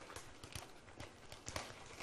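A few light, sharp knocks about half a second apart, heard over faint room hiss.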